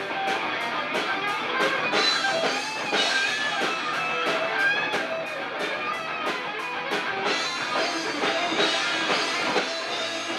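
Live rock band playing: electric guitars, bass guitar and drum kit together, with cymbal hits on a steady beat until about seven seconds in, after which the cymbals drop out.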